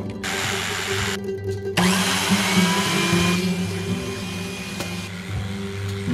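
An electric power tool cutting wood runs in two bursts over background guitar music. The first burst lasts about a second; the second is longer, with a steady whine that fades away.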